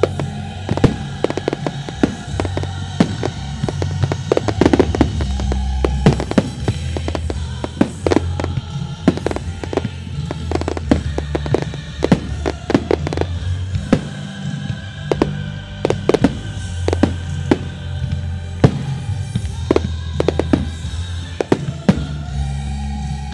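Dominator fireworks bursting in a dense, continuous string of sharp bangs and crackles, over music.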